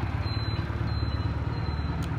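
Honda CM125 Custom's air-cooled 125cc parallel-twin engine idling steadily, with an even low pulse.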